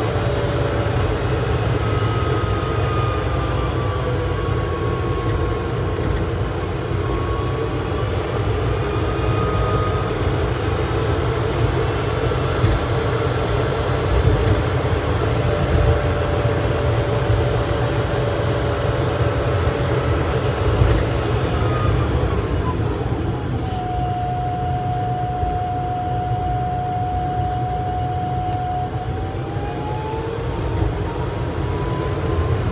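Opel Rocks-e electric microcar driving, heard from inside its cabin: steady low road and tyre noise, with the electric drive's whine gliding up and down with speed and rising near the end as it speeds up.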